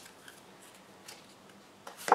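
Faint, light ticks and soft rustles of a deck of tarot cards being handled in the hand, a few scattered small clicks over a low hiss.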